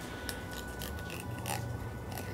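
A few faint crunching and scraping sounds of a fillet knife and gloved hands working a salmon on a plastic cutting board.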